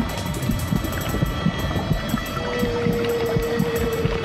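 Low, churning underwater rumble of a submerged tank, with a steady held tone coming in about halfway through.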